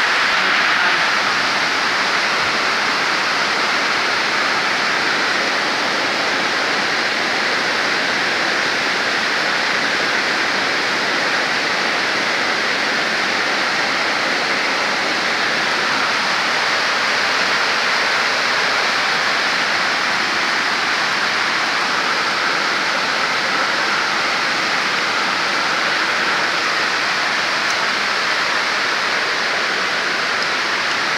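Heavy rain falling steadily: a loud, even hiss that holds without a break.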